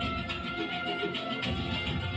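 Music with a held, high melody line over a dense, steady drum rhythm.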